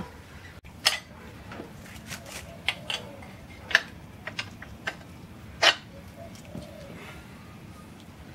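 Steel suspension parts clinking and knocking together as a leaf spring and its spring plate are handled and set on a rear axle housing: a scattered series of sharp metallic clicks, the loudest a little under four seconds in and again near six seconds.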